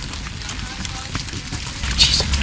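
Faint, indistinct voices of a small group walking outdoors over steady noise and low rumble, broken by a few light clicks.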